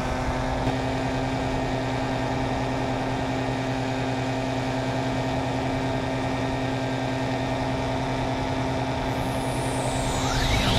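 Paramotor engine and propeller running at a steady cruise throttle in flight, an even drone with no change in pitch. Near the end a faint sweeping high tone comes in over it.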